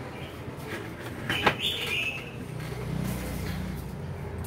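A short high bird chirp right after a sharp click about a second and a half in, over a low steady hum.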